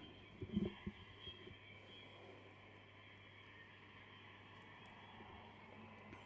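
Near silence: a faint steady hiss, with a few soft low sounds in the first second.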